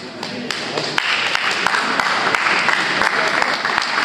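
Audience applauding and clapping, starting about a second in, with voices mixed in.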